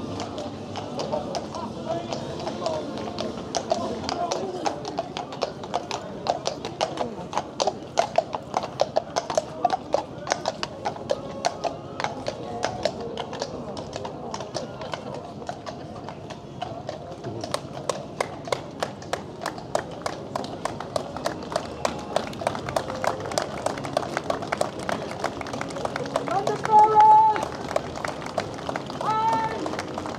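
Marching feet striking the wet road in a steady rhythm, with voices in the background. A brief shouted call comes near the end.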